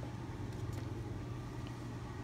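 A steady low machine hum with no change in level, the background drone of a room.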